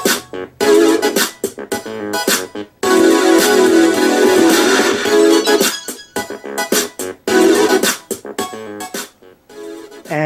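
Electronic dance track with synthesizer and keyboard parts, played through a Panasonic CT-27D11E CRT television's speakers and an added soundbar and heard in the room. It comes in choppy phrases with short gaps, has little bass, and sounds kind of tinny.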